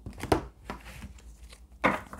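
Tarot card decks being handled and set down on a table: two sharp knocks about a second and a half apart, with faint card clicks between.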